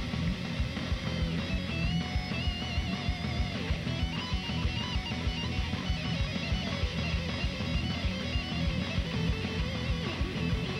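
Live heavy metal band playing an instrumental passage: electric guitars with a wavering, bending lead line over drums with a fast, steady kick-drum beat.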